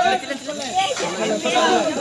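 Several men's voices talking and calling out over one another, with no single voice standing out.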